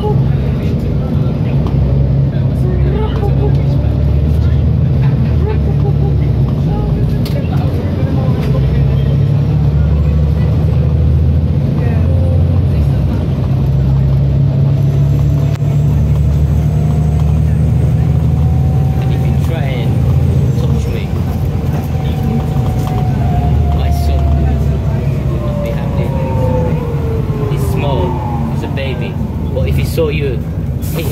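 Interior of a Volvo B7TL double-decker bus on the move, its six-cylinder diesel engine giving a steady low rumble. Over the second half a whine climbs, holds, then falls away over the last few seconds as the bus speeds up and then slows.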